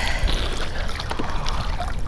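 Lake water splashing and sloshing close to the microphone as a swimmer does freestyle arm strokes and kicks on a kickboard, a steady wash with a few short splashes.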